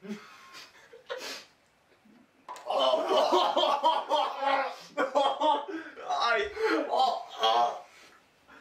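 Two young men laughing and making wordless vocal reactions right after biting into Bean Boozled jelly beans, loud and almost continuous from about two and a half seconds in.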